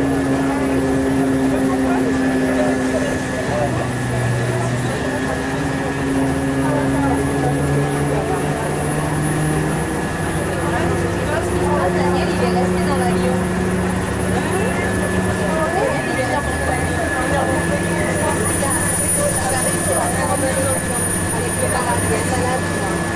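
Engine of an apron shuttle vehicle running as it drives, its low hum holding for a few seconds and then shifting to a new pitch several times, with voices in the background.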